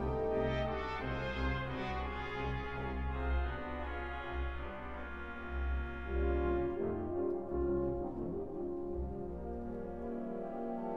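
Fratelli Ruffatti pipe organ and symphony orchestra playing sustained, brass-coloured chords over deep, long-held bass notes. The upper register thins out about seven seconds in.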